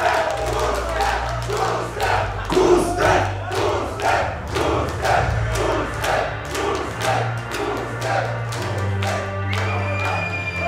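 Concert crowd chanting and clapping in a steady rhythm, about two beats a second, over a low steady hum from the stage.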